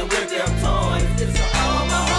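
G-funk hip hop music: a beat with a heavy bass line and a melodic lead, with no rapping.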